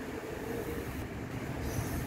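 Steady rush of a rainstorm's wind and heavy rain, heard from behind a closed glass window, slowly getting a little louder.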